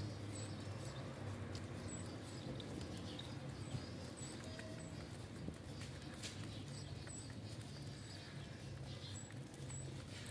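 Feral rock pigeons pecking seed from a bare palm: faint, scattered quick clicks and taps of beaks on seed, over a low steady hum.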